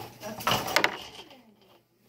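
Jolly Rancher hard candies sliding out of a plastic bag and clattering into a glass mason jar, a short run of clicks and rattles in the first second.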